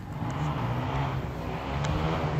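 An engine running steadily with a low hum and a rushing noise, growing a little louder about half a second in.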